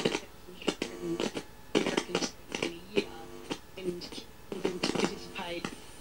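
A faint voice from an AM broadcast station, received by a galena crystal set and played through a small powered speaker, talking in short phrases while the crystal detector is adjusted by hand.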